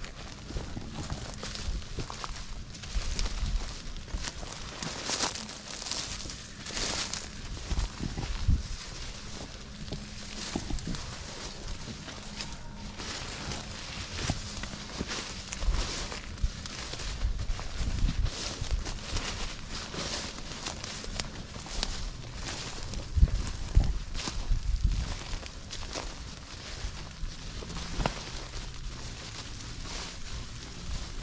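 Footsteps pushing through dense, leafy kudzu undergrowth: irregular rustling and brushing of vines and leaves against legs, with soft thuds of steps on the ground.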